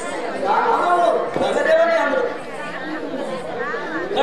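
Voices talking, with overlapping chatter.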